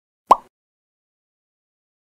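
A single short pop sound effect, edited in over otherwise silent audio, about a third of a second in.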